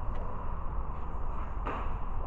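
A steady low rumble with camera handling noise as the camera is moved, and a brief rustle near the end.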